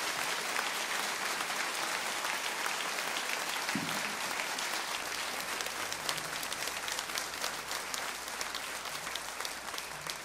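Concert audience applauding, with the clapping thinning into more separate claps toward the end.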